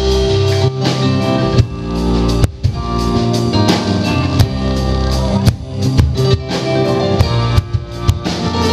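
Live rock band playing an instrumental passage with no singing: electric keyboard, electric guitar, bass guitar and drum kit, the drums hitting on a steady beat. The band drops out for a moment about two and a half seconds in.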